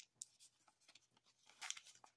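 Near silence, with a few faint crinkles of foil Pokémon booster pack wrappers being handled, the clearest just before the end.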